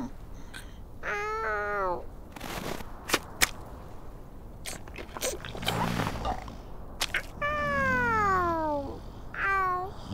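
Cartoon seal characters' squeaky voice calls. There is a wavering squeak about a second in, a long falling cry near the end and a short call just before the end. A few sharp clicks and a soft noisy swell come in between.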